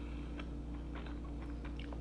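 Faint chewing of a mouthful of rice: a few soft, scattered mouth clicks over a steady low room hum.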